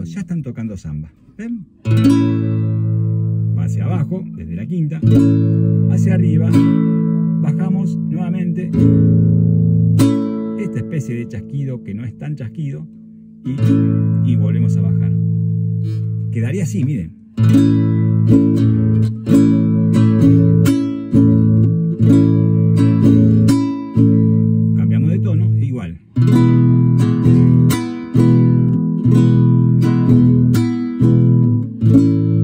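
Nylon-string classical guitar strummed on an A major chord in the basic zamba rhythm: thumb down, up, thumb down on the bass strings, an open-hand strike on the strings (half chasquido), then thumb down, repeated over and over with a few brief breaks.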